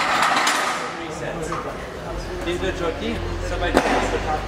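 Indistinct voices in an open gym, with a brief rush of noise at the start, a low steady hum from about halfway, and a single sharp knock near the end.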